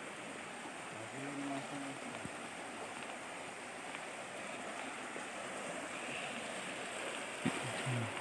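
Small river flowing, a steady rush of water. A brief faint hum of a voice comes about a second in.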